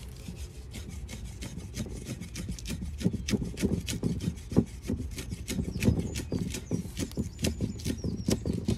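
Meat cleaver chopping green leaves on a round wooden chopping block: a rapid, steady run of chops, the blade knocking on the wood, growing louder a couple of seconds in.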